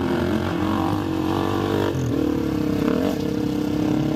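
Sidecar motocross outfit's engine running hard under throttle; its pitch climbs for about two seconds, then drops suddenly and holds steadier.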